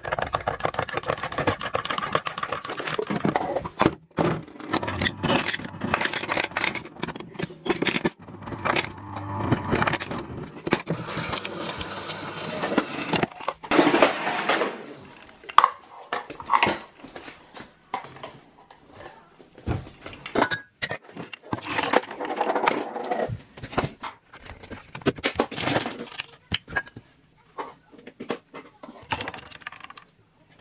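An irregular run of clinks, knocks and scrapes from handling a glass, ice and utensils while an iced coffee is made at a kitchen counter.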